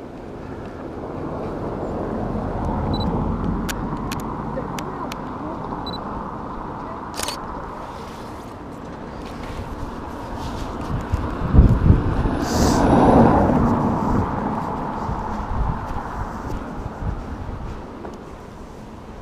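Outdoor roadside noise with a vehicle passing, loudest between about eleven and fourteen seconds in, and a few small clicks a few seconds in.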